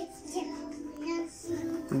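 A toddler singing a few short, soft notes.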